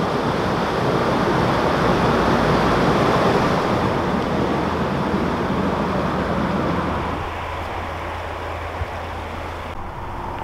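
Water rushing into a canal lock chamber as it fills, a loud steady roar that eases off about seven seconds in, leaving a low steady hum.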